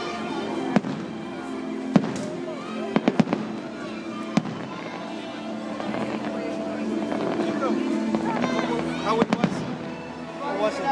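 Aerial firework shells bursting as sharp bangs: single reports about a second in and two seconds in, a quick run of three about three seconds in, another at about four seconds, and a quick cluster near the end. Throughout, the show's music plays steadily beneath them.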